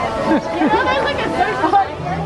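Crowd chatter: many voices talking over one another, with no single clear speaker.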